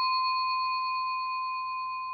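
A steady high-pitched tone with fainter overtones above it, holding one pitch and slowly fading.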